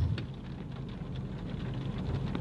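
Steady low hum and noise inside a parked car, with a few faint ticks.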